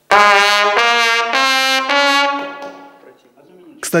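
Trumpet played loud (forte), a short phrase of about four sustained notes, the last held and then fading away about three seconds in.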